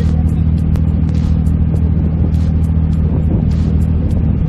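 Daihatsu Copen Explay's small turbocharged three-cylinder engine running at a steady cruise with the roof down: a low, even drone mixed with wind and road noise.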